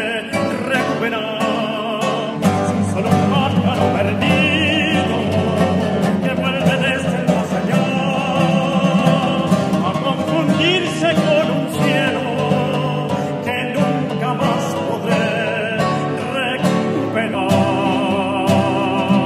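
Tenor singing in operatic style with a wide vibrato on held notes, accompanied by two classical guitars playing a tango.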